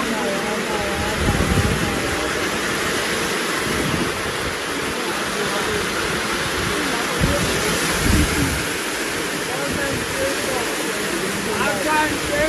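Heavy rain pouring down, a dense steady hiss of water falling on the ground.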